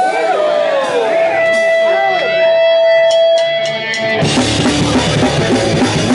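A steady amplified guitar tone rings over scattered voices, then about four seconds in a hardcore punk band comes in all at once with drums, distorted guitars and bass, starting a song.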